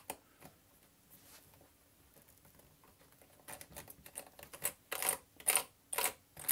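Small precision screwdriver working a tiny screw out of the back edge of a MacBook Pro A1150's aluminium case: one click at the start, then after a few seconds of near quiet a run of light metallic clicks and ticks in the second half.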